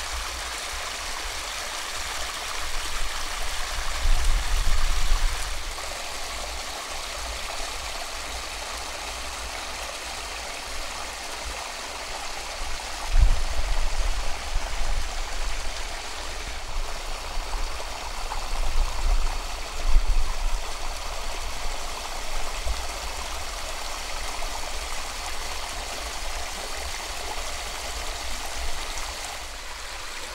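Small waterfall spilling into a pool: a steady rush of water, broken by a few brief low rumbles.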